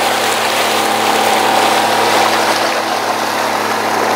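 Boat engine running steadily under way, a constant hum over the loud rush of churning wake water.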